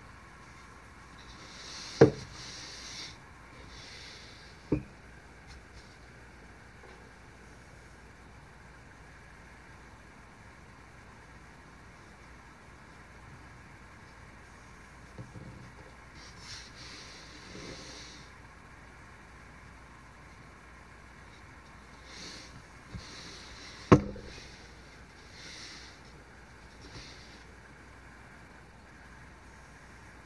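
A chip-carving knife slicing into a wooden board in short scraping strokes, with pauses between cuts. Two sharp knocks, the loudest sounds, come about two seconds in and again about twenty-four seconds in, with a smaller one near five seconds.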